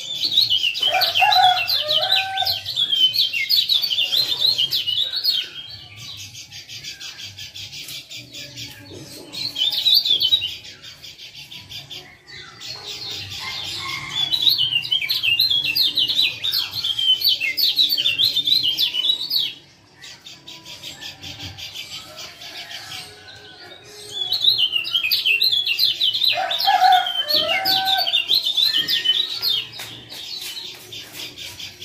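Kecial kuning, a Lombok white-eye, giving rapid high 'ciak' chirping calls in bouts of several seconds with short pauses between, and a few lower whistled notes near the start and near the end.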